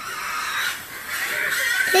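A pig squealing: a noisy, high-pitched animal cry lasting most of two seconds.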